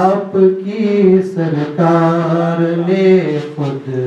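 A man singing an Urdu devotional song solo, without instruments, in long, slowly gliding held notes. There is a short breath break near the end.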